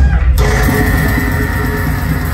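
Live heavy metal band playing loud, with distorted electric guitars and drums. A steady high note comes in about half a second in and holds.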